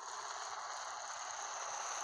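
Tank-tracks sound effect for a Tiger tank rolling past: a steady metallic rattle and scrape that fades in at the start and keeps an even level.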